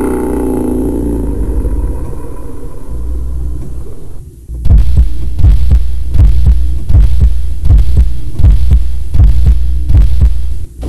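Overdubbed soundtrack: a steady low droning hum, which gives way about halfway through to a deep thump repeating roughly every 0.7 seconds, like a slow heartbeat.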